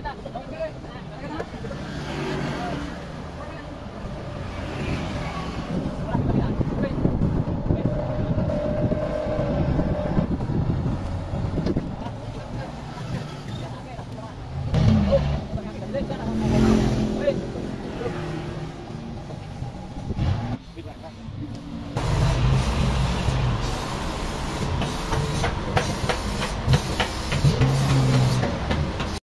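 Toyota forklift's engine running as it carries and moves a heavy log slab, with people's voices in the background.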